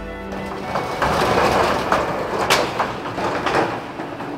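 Background music overlaid with a hissing TV-static transition sound effect, with a sharp hit about two and a half seconds in.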